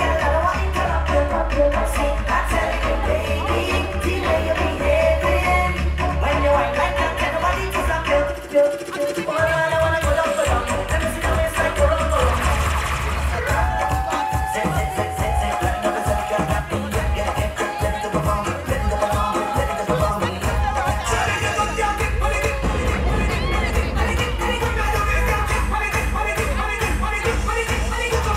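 Dancehall music played loud over a sound system, with a heavy bass beat and a vocal line; the bass cuts out for about a second about a third of the way in.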